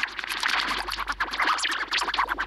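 Heavily distorted, scratchy, music-like logo-edit audio played back in the editor, chopping in a very fast stutter of many short pulses a second.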